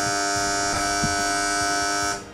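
Talent-show judge's buzzer: one steady, harsh electronic buzz lasting about two seconds, then cutting off. It marks a judge's X, a vote against the act.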